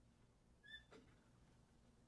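Near silence with a faint low hum of the room, broken about three-quarters of a second in by one brief, faint high chirp followed by a soft click.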